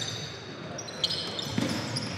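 A basketball bouncing on a hardwood gym floor as a player dribbles at the free-throw line, with a sharp bounce about a second in. Voices murmur in the background.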